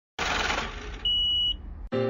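A short burst of hiss-like noise, then one high steady beep lasting about half a second, followed by more noise that cuts off suddenly near the end.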